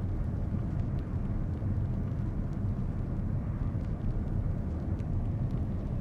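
Jet airliner cabin noise in flight: a steady low drone of engines and airflow heard from inside the cabin.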